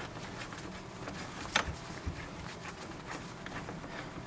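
Faint handling of a socket wrench on a bolt in a steel seat frame: low scattered ticks, with one sharper metallic click about a second and a half in.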